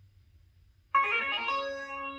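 Short plucked-string musical jingle from a Google Home Mini's speaker. It starts suddenly about a second in and its notes ring on. It is the game's sting for a correct answer.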